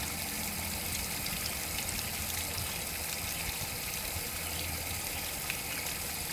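Water running steadily from the automatic fill line into a plastic ice cube tray used as a chicken waterer, as the system tops the dish off with fresh water.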